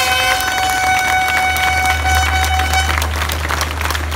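Audience applauding, with a steady horn blast held over the clapping that stops about three seconds in.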